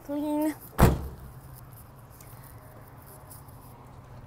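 The tailgate of a 2014 Chevrolet Silverado 1500 pickup being slammed shut: one loud metal bang just under a second in, just after a brief hummed voice.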